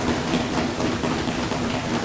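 Members of parliament applauding the announcement: a dense, steady clatter of many hands.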